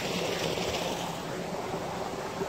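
Water running in a shallow spring-fed stream: a steady, even hiss of flowing water.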